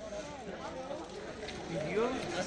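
Overlapping voices of several people talking and calling out at a distance, with no single voice standing out.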